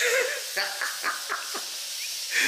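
A man laughing in a run of short, breathy bursts over a steady hiss.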